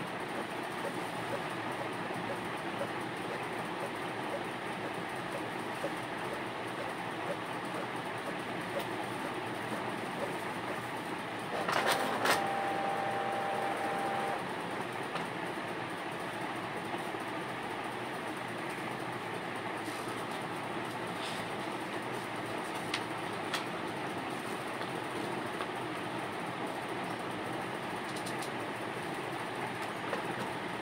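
Steady rushing background noise with no clear source. About twelve seconds in there is a brief louder moment with a short steady tone, and a few light clicks come later.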